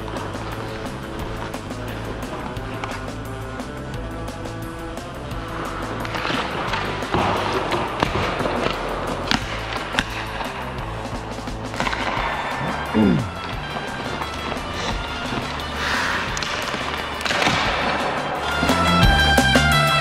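Background music with a steady bass line. Under it, from about six seconds in, ice-hockey skate blades scrape and carve on the ice, with a few sharp clacks of stick and puck.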